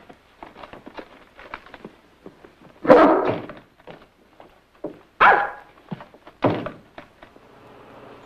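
A dog barking three times, the first call the loudest, after a run of light knocks and clicks.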